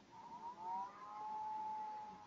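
A faint siren wailing, several tones gliding in pitch at first and then holding steady.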